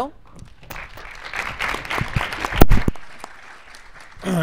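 Audience applauding to welcome the first panel speaker, fading out after a couple of seconds. A loud thump about two and a half seconds in is the loudest sound.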